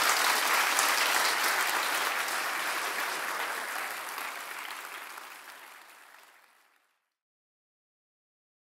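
A large audience applauding, fading out over about six seconds.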